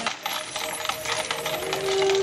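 Metal spoon clinking rapidly against a glass while stirring a red drink, a quick run of light metallic clicks.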